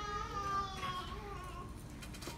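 A faint, high-pitched, wavering cry with a few overtones, fading out after about a second and a half.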